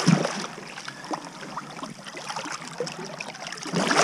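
Water splashing and sloshing at a kayak's side as a sturgeon held by the tail is let go, louder right at the start and again near the end.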